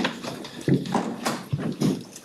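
A man laughing in short, uneven bursts.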